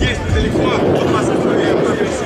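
Steady jet noise from the Sukhoi Su-57 fighter's twin engines as it flies its display overhead, with an announcer's voice faintly mixed in.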